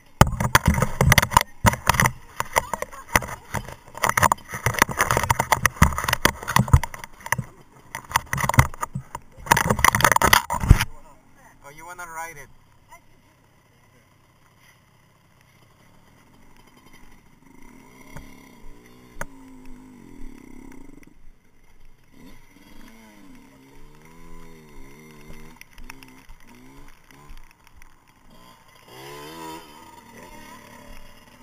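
Loud rubbing, crackling and knocking on a helmet-mounted action camera's microphone for about the first eleven seconds, as goggles pass right in front of the lens. Then much quieter, with only faint low sounds.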